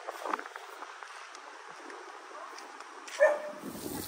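A dog barks once, briefly, about three seconds in, over a faint outdoor background.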